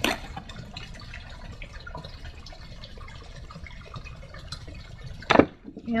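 Faint dripping of liquid over a low background, with a sharp click at the start and one brief, louder burst of handling noise about five seconds in.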